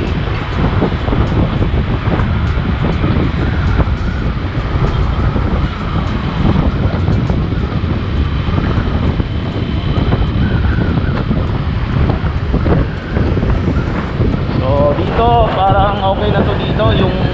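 Wind noise buffeting the microphone on a moving motorcycle, over the low steady noise of the engine, tyres and surrounding traffic. A man's voice starts near the end.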